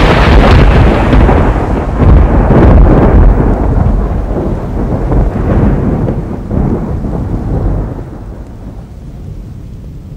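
A loud crash of thunder, used as a sound effect. It rolls on in a long rumble, swells again about two to three seconds in, and dies away toward the end.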